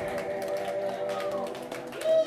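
A live band's final chord ringing on as a few held tones after the bass and drums have stopped, at the end of a song.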